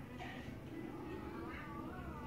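A drawn-out pitched call that falls in pitch, starting about one and a half seconds in, over a steady low hum.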